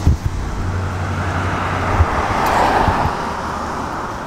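Street traffic: a passing car's noise swells in the middle and fades toward the end, over a steady low rumble. A few short low thumps come from the handheld camera being jostled while walking.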